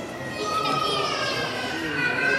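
Visitors' voices in a large hall, with a child's high-pitched voice calling out from about half a second in.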